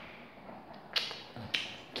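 Two sharp taps, the first about a second in and the second about half a second later, each with a short ring-out over faint room noise.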